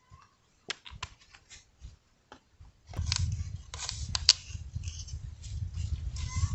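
Light plastic clicks and taps from a squeeze bottle of red colorant and a plastic cup of paint. About halfway through, scratchy scraping from stirring the paint in the cup sets in over a steady low rumble, with one sharper click.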